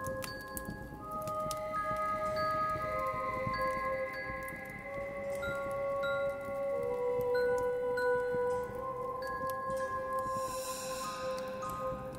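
Quiet ambient outro music of slow, overlapping, held chime-like tones that change pitch every second or so.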